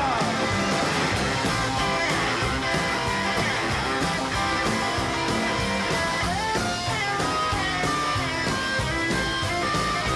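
A live rock-and-roll band playing, led by an electric guitar solo with sliding, bent notes over bass, drums and cymbals.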